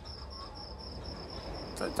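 A cricket chirping steadily, one high-pitched pulse repeating about five times a second, over a faint low hum.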